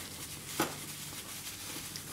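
Faint rustling and scraping as a metal teaspoon digs soil out of a black plastic bag, with a small tap about half a second in.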